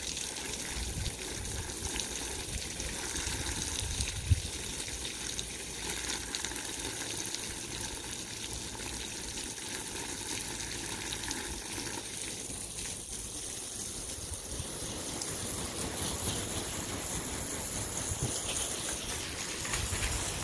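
Steady stream of water from a garden hose splashing onto wet soil and a puddle.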